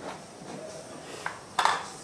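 Plastic screw cap being twisted off a plastic jar and put down on a tiled floor: a small click, then a sharp clack about a second and a half in.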